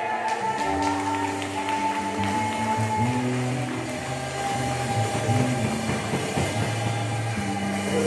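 Church band music: an electric bass guitar plays a slow line of held low notes under sustained keyboard chords.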